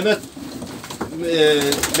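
Domestic pigeons cooing in a small wooden loft, with a quick flurry of wing claps near the end as one pigeon takes off from the wire floor.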